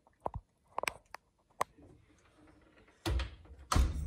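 A few light clicks, then an oven door being shut with two low thuds, about three seconds in and again just before the end.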